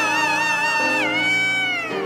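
Female soul singer belting a long, high held note with slight vibrato. About a second in it slides down to a lower note that is held again, over sustained accompaniment chords.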